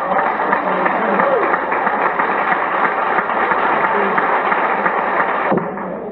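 A lecture audience reacting loudly with many voices at once and clapping, cutting off sharply about five and a half seconds in.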